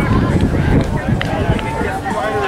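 Distant shouts and calls from players and sideline, over a steady low rumble of wind buffeting the microphone, with a couple of faint clicks about a second in.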